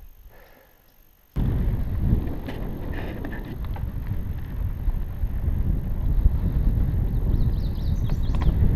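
Mountain bike rolling fast over a dirt trail, picked up by a camera mounted on the bike or rider: a dense low rumble with scattered rattles that starts suddenly about a second in.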